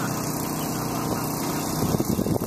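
A boat engine idling steadily with an even hum as a chase boat motors slowly into the marina, with a few light knocks near the end.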